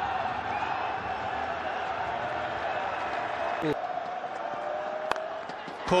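Steady murmur of a large stadium crowd at a cricket match. About five seconds in there is a single sharp crack of a cricket bat hitting the ball as the batsman plays a pull shot.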